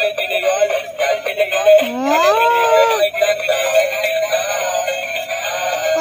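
Battery-operated dancing apple toys playing electronic music with synthetic-sounding singing through their small built-in speakers, thin and without bass.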